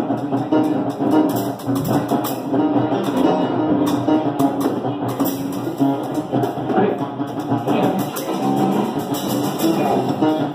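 A small band playing live: guitar over a drum kit, with cymbal strokes throughout.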